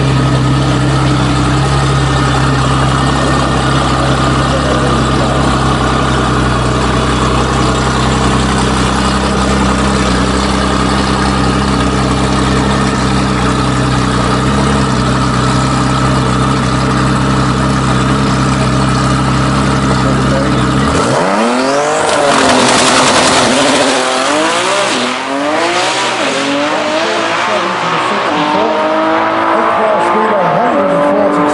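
A roughly 2000 bhp Nissan GT-R R35 drag car's twin-turbo V6 runs steadily at the start line. About 21 seconds in, it launches at full throttle and the engine note climbs and drops through several quick gear changes as the car accelerates away down the strip.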